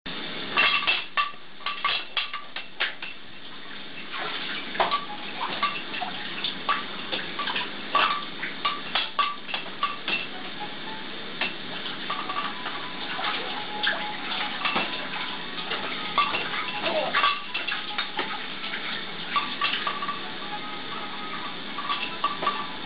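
Hard plastic baby toys rattling and clacking in irregular quick clusters as a baby shakes and bats the toys on a bouncer's toy bar.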